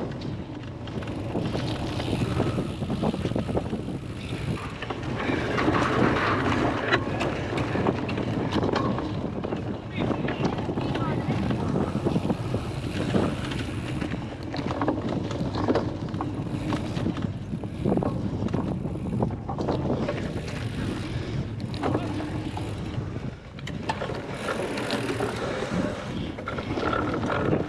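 Wind noise on the microphone with indistinct voices nearby, and bicycles riding over grass with short knocks and rattles.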